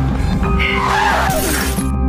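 A car windscreen smashing under a body's impact, a crash of breaking glass from about half a second in that cuts off sharply near the end, over film score music.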